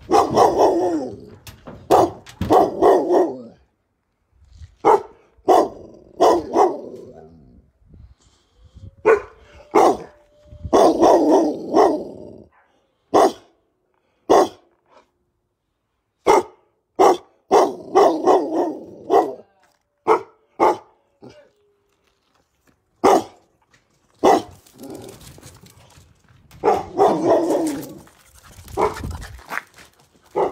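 A dog barking in repeated bouts of several sharp barks, with short silent gaps between the bouts. A man coughs a couple of times near the start.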